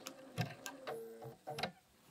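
BERNINA 570 sewing machine taking a slow stitch: a few light mechanical clicks with a brief motor hum about a second in. This is a single stitch at the end of an appliqué edge, made just before pivoting the fabric.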